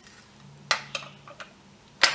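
Three small hard clicks, the first the loudest, of eyeglasses being taken off and set down on a glass tabletop.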